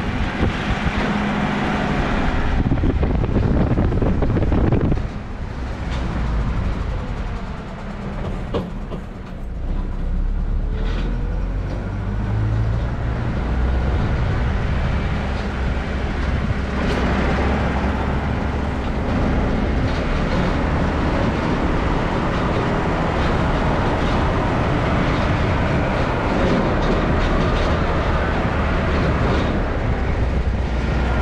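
Pickup truck driving slowly, heard from outside its open window: steady engine and tyre noise on concrete and brick paving, with wind on the microphone. The sound dips for a few seconds about five seconds in, then runs on steadily.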